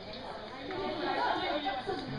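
Indistinct chatter of several voices talking at once, a little louder in the second half.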